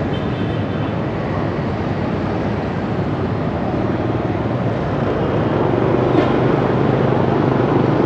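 Steady noise of dense motorbike and scooter traffic crossing a city intersection, engines humming together. It grows louder over the last few seconds.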